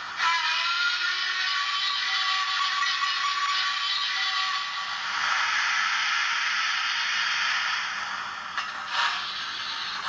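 Hornby TTS sound decoder in a model LMS Coronation class steam locomotive playing steam sounds through its small speaker. A drawn-out, slightly sliding tone lasts about four and a half seconds, then a louder steam hiss follows as the engine starts to move off. A sharp chuff or two comes near the end.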